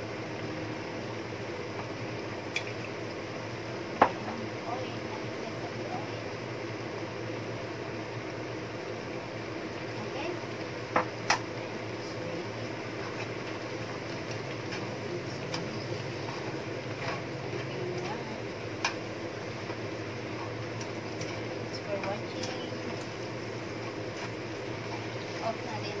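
Indian lettuce sizzling steadily in a nonstick frying pan as it is stir-fried, over a low steady hum. Chopsticks knock against the pan a handful of times, the loudest about four seconds in and twice in quick succession around eleven seconds.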